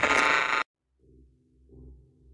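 Outro sound design of a podcast: a loud, glitchy burst of music that cuts off suddenly about half a second in, followed by faint low swelling tones.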